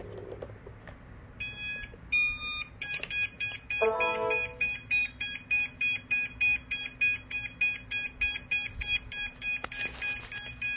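Electronic buzzer sounding two long high beeps, then beeping rapidly and evenly, about three beeps a second. A short lower tone sounds once about four seconds in.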